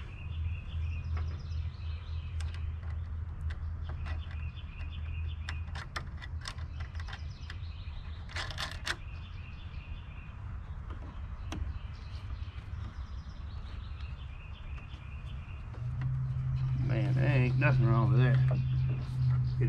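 Small birds chirping repeatedly over a steady low hum, with scattered light clicks. Near the end a louder steady hum sets in.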